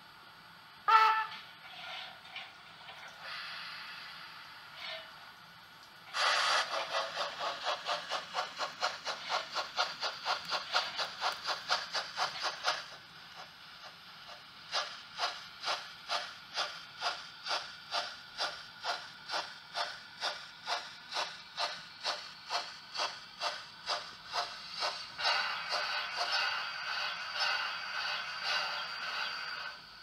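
Sound effects of a digital model steam locomotive: one short loud whistle about a second in, a hiss of steam, then chuffing exhaust beats, quick at about four a second from about six seconds in. After a short pause the chuffing comes back slower and steady, under two beats a second, with more hiss near the end.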